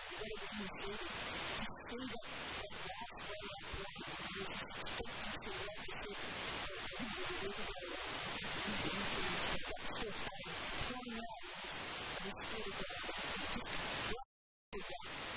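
A woman talking through a hand-held microphone and the hall's sound system, over a steady hiss.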